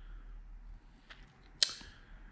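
Quiet room tone with two short clicks: a faint one about a second in and a sharper one a little later.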